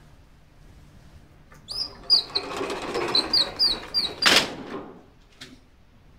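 Spring-roller pull-down projector screen retracting: a rattling, rushing whir with a rapid run of high squeaks for about two and a half seconds, ending in a loud clunk as the screen snaps up into its case.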